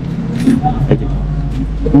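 Low steady rumble of a passing vehicle, with a little murmured speech and a single sharp click about a second in.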